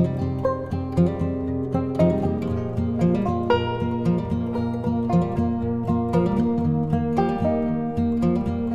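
Background music with plucked-string instruments playing a steady, repeating pattern over sustained low notes.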